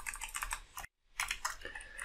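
Typing on a computer keyboard: a run of quick keystrokes, broken by a short dead silence about a second in.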